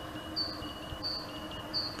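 A small songbird singing a repeated two-note phrase, a high thin whistle alternating with a lower one, about three times.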